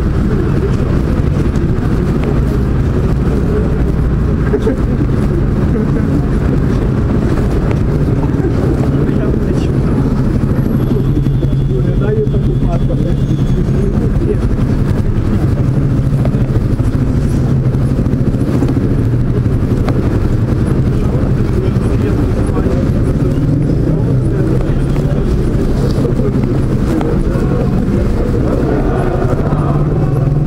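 Steady engine and road drone inside a moving car's cabin, a low hum holding evenly throughout, heard muffled, with indistinct voices under it.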